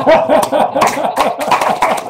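Loud laughter: a rapid, continuous run of short 'ha-ha' pulses that bursts in just before and keeps going throughout.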